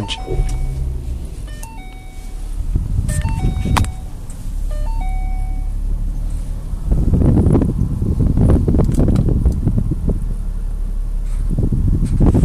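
A short run of electronic chime tones stepping in pitch, then a Mustang's 3.7 V6 engine running, louder from about seven seconds in.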